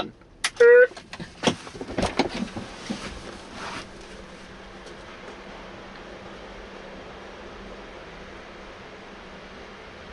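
Tesla Model S driver's door opened and the driver climbing out: a quick run of clicks and knocks over the first four seconds, with a brief vocal sound about half a second in. After that only a steady low hiss remains.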